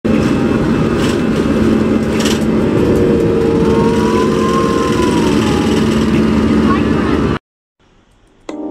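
An airliner's jet engines running, heard inside the cabin as the plane rolls along the runway: a loud, steady rush with a steady hum. A faint tone rises and falls in the middle, and the sound cuts off suddenly near the end.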